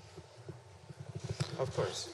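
Handling noise from a handheld microphone being moved and passed along: soft bumps and rubbing on the mic, growing louder and busier in the second half.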